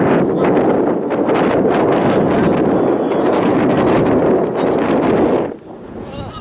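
Wind blowing across the microphone, loud and steady, cutting off suddenly about half a second before the end.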